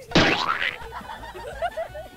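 Cartoon-style comedy boing sound effect: a sudden loud hit with a falling sweep, then a quieter wobbling twang that dies away over the next second and a half.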